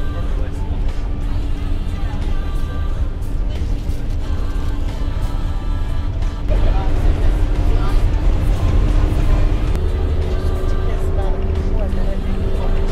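Steady low rumble of an overland truck driving on the road, heard from inside its passenger cabin, with music and a voice over it; it gets a little louder about halfway through.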